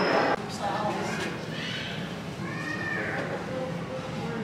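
Indistinct chatter of visitors echoing in a large museum hall. A loud rushing noise cuts off abruptly just after the start, and a short high call that rises and falls is heard about two and a half seconds in.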